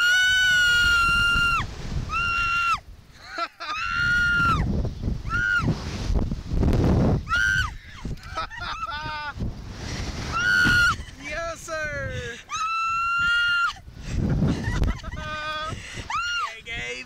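Two riders on a Slingshot reverse-bungee ride screaming again and again, some screams long and high, some short yelps, with a rushing noise of the ride's motion underneath.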